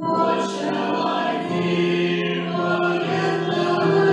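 Congregation singing a hymn together, many voices holding long sustained notes.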